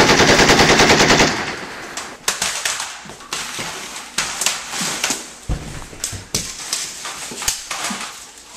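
Rapid machine-gun fire: a loud burst of about ten shots a second lasting roughly a second and a half, then scattered single sharp shots through the rest.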